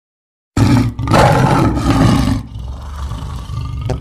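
A loud, rough roar sound effect, like a big cat's, bursting in suddenly about half a second in and lasting about two seconds, then dying down into a lower rumble.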